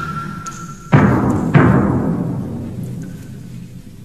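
Dramatic soundtrack music: two heavy drum hits, about a second in and again half a second later, each ringing out and slowly fading.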